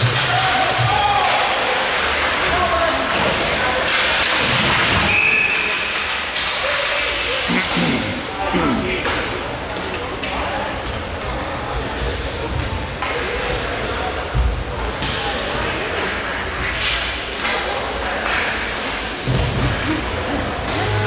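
Ice hockey rink sounds during live play: spectator voices and shouts mixed with thuds and knocks of the puck and sticks against the boards and glass.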